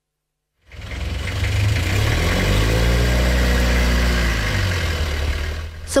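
SUV engine running as the car manoeuvres, its note rising and then falling again.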